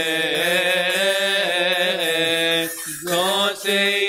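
Male voices chanting a Coptic Orthodox liturgical hymn: long, melismatic held notes that slide slowly up and down in pitch. There is a short break for breath just before three seconds in, and then the chant goes on.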